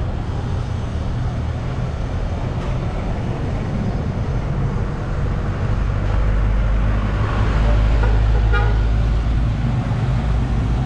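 Motorcycle engines running in street traffic, a steady low rumble that grows louder about six seconds in. A vehicle horn beeps briefly near the end.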